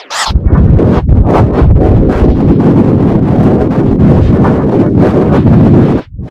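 Heavily distorted, bass-boosted edited logo audio: a loud, dense low rumble with fast crackle that starts about a quarter second in and cuts off suddenly at the end.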